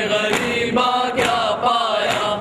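A voice chanting a mournful recitation in a drawn-out melodic line, like a noha at a majlis, with sharp strikes about twice a second beneath it.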